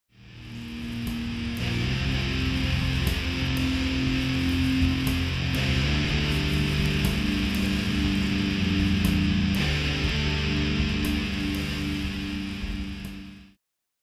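Heavy metal music with distorted electric guitar holding slow, sustained chords that change every second or two, and a few sharp hits. It fades in at the start and cuts off suddenly near the end.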